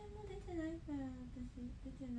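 A young woman humming softly with her mouth closed. It is a short run of separate notes that steps down in pitch over the two seconds.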